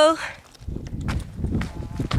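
Footsteps on a dry, stony trail together with rumbling from a hand-held camcorder being carried, starting about half a second in.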